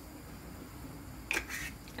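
Quiet kitchen room tone, then, about a second and a half in, a brief dry rustle: dried mint being crumbled between fingers over a pot of soup.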